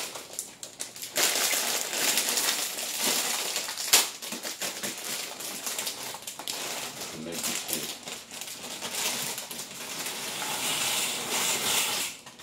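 Kitchen handling noises: a plastic food bag rustling and crinkling, with a single sharp click or knock about four seconds in.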